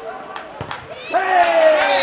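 A football kicked hard on a dirt pitch, a sharp thud about half a second in, then about a second in a spectator's loud, long shout, falling in pitch, cheering the shot on goal.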